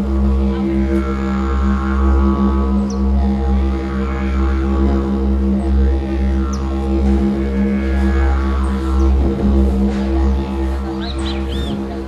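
Background music: a steady low didgeridoo drone, its upper overtones sweeping slowly up and down.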